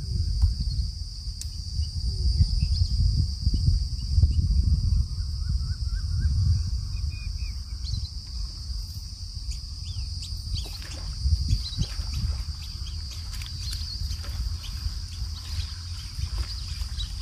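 Outdoor pond-side ambience: a steady high insect drone, wind rumbling on the microphone, and a short run of bird chirps a few seconds in. A few sharp clicks come a little past the middle.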